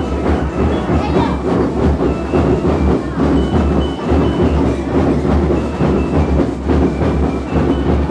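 A school rhythm band (banda rítmica) playing: dense, rapid drumming with heavy bass-drum beats, and short high melody notes at a few pitches above the drums.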